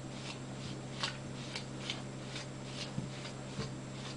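A utensil stirring and mashing thick cake batter in a glass bowl, scraping against the glass in quick repeated strokes, about three a second.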